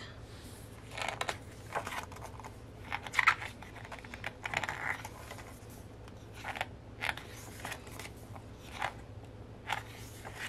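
Pages of a photobook being turned by hand: a string of short paper rustles and flicks, several seconds apart.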